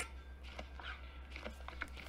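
Quiet pause: a low steady hum with a sharp click right at the start and a few faint ticks near the end.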